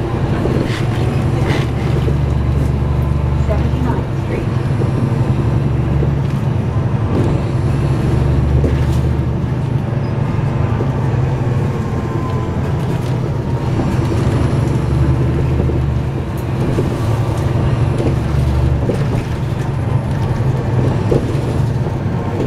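Inside a 2009 NABI 416.15 suburban transit bus under way, heard from near the rear: a steady low engine and drivetrain drone with road noise and small rattles. The drone swells and eases several times as the bus pulls away and slows.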